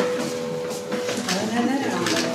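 Background music with a held note that fades out about a second in, followed by a person's voice talking indistinctly, with a few short clicks.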